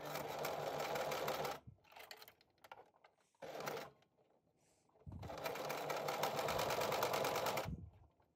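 Electric sewing machine stitching a seam through layered fabric in start-stop runs: about a second and a half of rapid needle strokes, a brief spurt twice, then a longer run of about two and a half seconds that stops just before the end.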